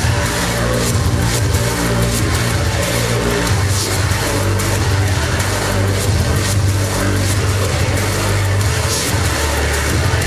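Live industrial electronic music played loud through a PA, driven by a heavy bass line that steps between notes, with a steady pattern of short high percussion hits.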